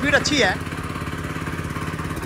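VST Shakti power weeder's 212 cc single-cylinder petrol engine running steadily with an even, rapid beat.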